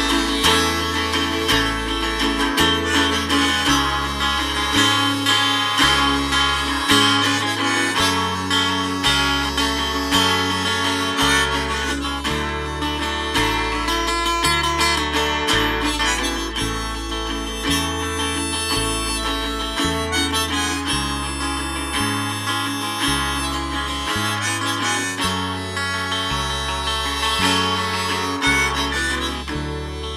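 Harmonica in a neck holder playing an instrumental break over a steadily strummed guitar, with bass notes moving on the beat.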